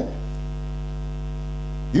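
Steady electrical mains hum, a low buzz with many evenly spaced overtones, carried in the sound system.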